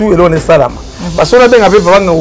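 Speech only: a man talking, with a few sharp hissed sibilants.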